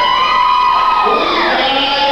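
A person's voice holding one long, high-pitched yell that slides down in pitch about a second and a half in, echoing in a large hall.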